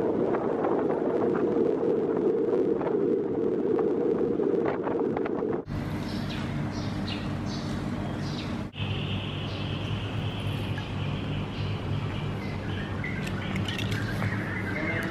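Vehicle ride noise on a street at night: a steady low rumble of engine and road for about the first six seconds. It then cuts to quieter ambience with a low hum, and a steady high-pitched drone comes in about two-thirds of the way through.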